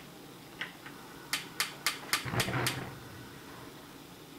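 Stove being switched on: a quick run of about six sharp clicks, roughly four a second, with a low thud among them.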